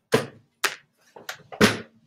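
Five sharp knocks in quick, uneven succession, each ringing briefly, the first and last the loudest.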